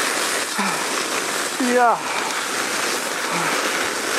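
Sled sliding fast over snow: a steady hiss with no breaks, brief bright voiced sounds aside.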